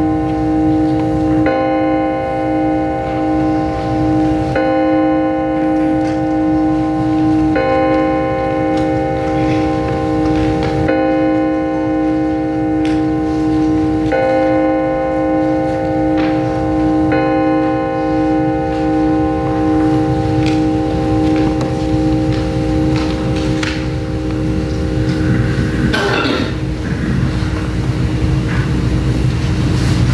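Organ playing slow, held chords that change about every three seconds, one low note pulsing steadily under them; the chords thin out in the last third.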